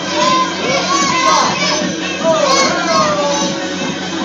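Many young children's voices chattering and calling out over background music.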